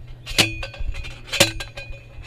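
A metal fence post being hammered into the ground: two sharp metal clangs about a second apart, each ringing briefly.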